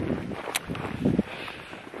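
Wind buffeting the camera's microphone in uneven gusts, with a single brief click about half a second in.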